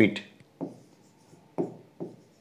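A pen writing by hand on an interactive display board: faint strokes with two soft knocks, about half a second and a second and a half in, just after the last word of a sentence.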